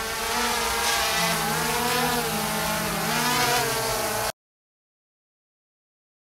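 DJI Spark mini quadcopter hovering close by, its four propellers giving a steady buzzing whine that wavers slightly in pitch as the motors adjust. The sound cuts off suddenly a little over four seconds in.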